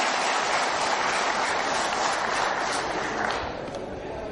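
Audience applauding, dying down about three seconds in.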